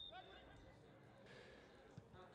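Near silence: faint outdoor field ambience, with a brief faint high tone at the very start.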